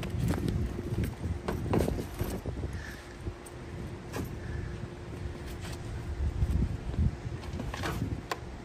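Luggage being loaded into a car trunk: bags shuffled and set down with a series of short knocks, clicks and thuds from handles, buckles and the trunk floor, over a steady low hum.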